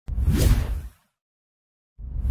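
Breaking-news intro sound effect: a single whoosh with a low boom under it, lasting just under a second and cutting off suddenly.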